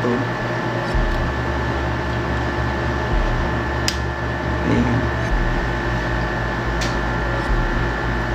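Sharp clicks of an XLR cable connector being plugged into a BM-800 condenser microphone, one about four seconds in and another near seven seconds, over a steady hum and hiss.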